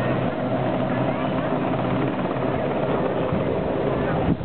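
Westland Sea King helicopter hovering low over the sea, its rotors and turbine engines running steadily and loudly.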